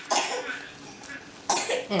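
A person coughing once, then a laugh starting near the end.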